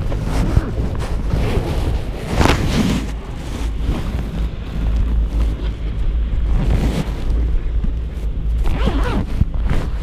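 Steady low rumble with a few bouts of rustling and rubbing noise close to the microphone, the loudest about two and a half seconds in.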